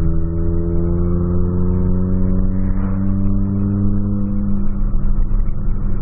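Ford Fiesta's 1.0 Zetec Rocam supercharged engine accelerating, heard from inside the cabin. The engine note rises steadily for about four and a half seconds, then levels off. It runs with a loud exhaust drone that the driver puts down to a holed exhaust.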